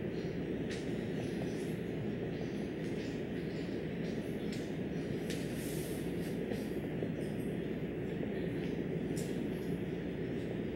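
Marker writing on a whiteboard: short, irregular strokes and faint squeaks over a steady low room rumble.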